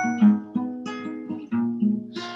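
Acoustic guitar being fingerpicked, a few notes and chords plucked one after another and left ringing, opening a song.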